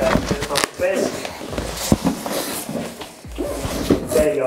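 Cardboard scraping and rustling as product boxes are pulled out of a large cardboard shipping carton, with a few sharp knocks and bumps, two of them about half a second and two seconds in.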